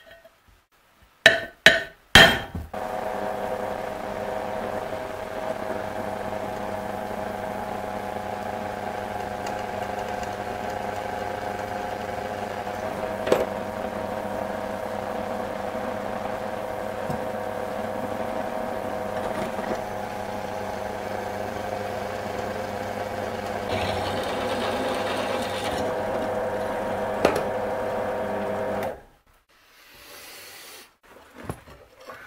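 A few sharp hammer taps on a punch against a steel plate, then a benchtop drill press running steadily as it drills the steel, with a couple of sharp clicks along the way, stopping shortly before the end.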